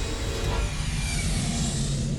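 A long rushing whoosh sound effect from an animated menu's soundtrack, like something flying past, fading slowly over a low steady music tone.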